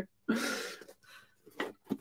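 A short breathy laugh, fading out, then a couple of soft clicks and knocks as a cardboard box is handled.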